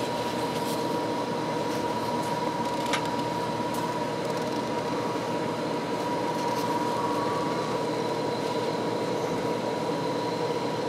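A steady mechanical hum of room noise, like an air conditioner, with a thin steady high whine over it.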